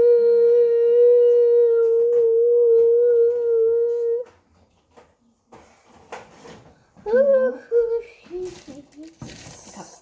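A young girl's voice holding one long wordless note, steady with a slight wobble, for about four seconds; a shorter vocal sound that bends up and down follows around seven seconds in.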